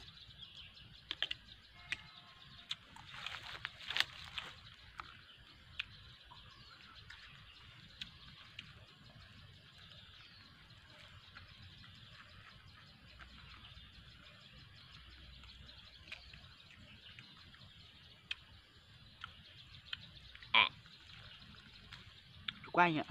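Faint outdoor ambience: a steady high-pitched chorus of wild creatures, with scattered small clicks and taps in the first few seconds and one short louder sound near the end.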